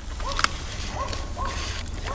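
Sticker sheets and paper rustling in a cardboard box as a hand sorts through them, with a sharp click about half a second in. A few faint, short chirp-like tones sound in the background over a low steady hum.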